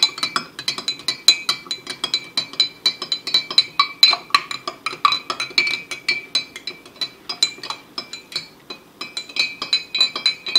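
A metal spoon clinking rapidly against the inside of a glass mug, several strikes a second, the glass ringing, as hot water is stirred to dissolve Epsom salt. The clinking pauses briefly about nine seconds in.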